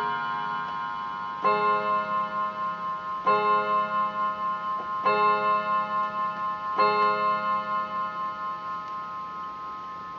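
Bentima Hermle triple-chime mantel clock striking four o'clock: four struck notes a little under two seconds apart, each ringing on and fading with a slow waver. The last notes of the quarter-chime tune are still dying away at the start.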